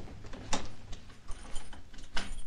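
Door lock and handle being worked: a sharp click about half a second in, then a run of small rattling clicks.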